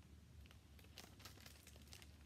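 Near silence with faint rustling and a few light ticks as a hardcover picture book is handled and closed, over a low steady hum.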